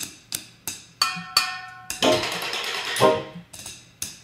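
Improvised percussion on kitchen pots, lids and utensils struck with wooden sticks: a quick run of sharp hits, one leaving a metallic ring, then about a second of dense rasping noise that ends in another hit.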